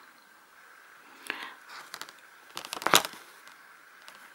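Embroidery needle and thread being pulled through plastic cross-stitch canvas: a few short rasps and clicks, a cluster about a second in and a louder one about three seconds in.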